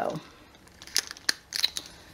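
Plastic wrapping crinkling in the hands as a sticker label is peeled off a wrapped soy wax melt, with a few sharp crackles about a second in and again shortly after.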